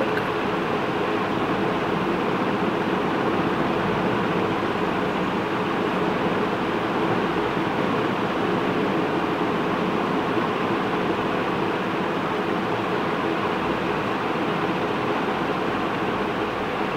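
Steady mechanical hum and hiss of a running room appliance, even and unchanging, with a few faint steady tones in it.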